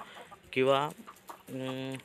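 Chicken clucking, mixed with a brief word from a man's voice.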